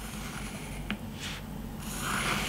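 Pencil drawing a line on white card: a faint scratching of the lead on the card, with a small tick about a second in.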